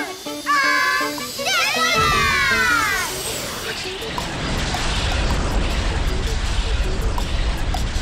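Cartoon rocket take-off sound effect: a low rumble with hiss that begins about two seconds in and carries on steadily, over background music. Before it, high voices exclaim in sweeping, falling glides.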